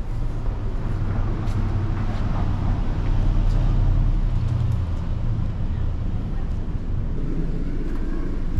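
City street traffic: a motor vehicle's engine making a steady low rumble, swelling about three seconds in as it passes.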